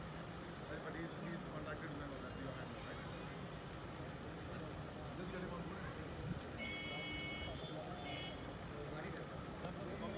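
Indistinct distant voices over a steady low rumble, with a short, high, steady tone sounding twice about seven and eight seconds in.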